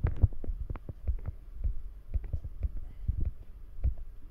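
Irregular low thumps and soft knocks, several a second: handling noise from fingers moving on a hand-held phone camera.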